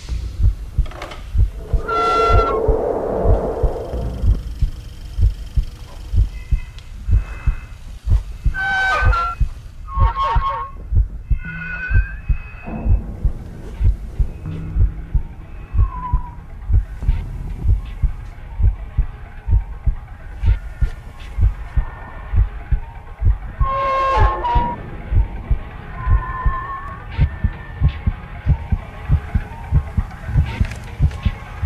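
Horror film trailer soundtrack: a heartbeat-like low pulse, about two beats a second, with short high-pitched wails over it, loudest about two, nine and twenty-four seconds in.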